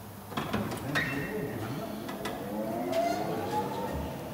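Wheel balancing machine spinning up a tyre and alloy wheel, its whine rising steadily in pitch and then levelling off near the end. A few knocks come first, about half a second and a second in, as the wheel is mounted and the hood is lowered.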